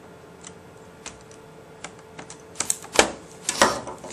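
Faint, scattered clicks of a small screwdriver working a screw into the plastic bottom case of a Dell Latitude 2100 netbook, then a quick run of louder plastic clacks and knocks near the end as the netbook is lifted and turned over on the bench.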